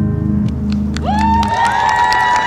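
A band's final chord rings out and stops about one and a half seconds in. About a second in, the audience breaks into rising whoops and cheers, with clapping joining in.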